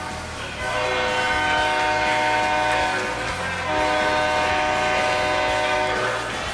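Arena goal horn sounding after a home goal: a steady, many-toned horn in two long blasts, with a short break about three seconds in.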